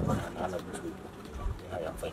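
A dove cooing in the background, with low voices.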